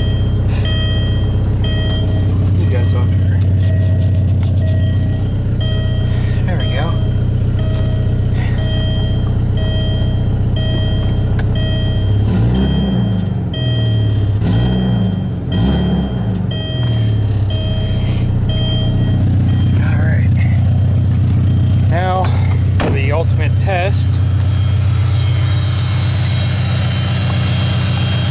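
Volkswagen New Beetle engine idling, a little bit loud, heard from inside the cabin, revved briefly a few times about halfway through. A dashboard warning chime beeps at an even pace until about two-thirds of the way in.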